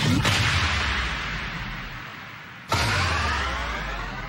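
Two trailer-style whoosh-and-impact sound effects: a sudden hit at the start that fades out over about two and a half seconds, then a second, louder hit just under three seconds in, each with a low rumbling tail.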